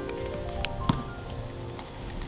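Quiet background film music of sustained, held notes, with a couple of short faint taps about halfway through.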